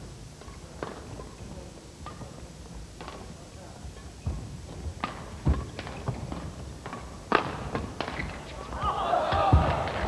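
Badminton rally: rackets striking the shuttlecock and players' shoes landing on the court make scattered sharp knocks, irregularly spaced about half a second to a second apart. Near the end, a swell of crowd voices rises.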